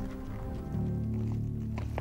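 Background music score of low, sustained notes that shift pitch about two-thirds of a second in.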